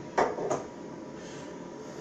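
Two short knocks about a third of a second apart from the aftershave balm bottle being handled, then only a faint steady background hum.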